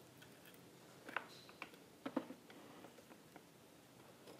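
A few faint, scattered clicks and small ticks from hands squeezing lime wedges over raw oysters and handling the oyster shells, the clearest about a second in and about two seconds in.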